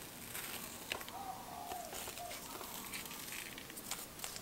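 Artist tape being peeled slowly off watercolor paper: a faint crackle with a few small clicks.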